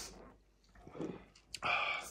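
A man drinking beer from a glass bottle: a sip and a faint swallow, then a sudden breathy exhale in the last half second.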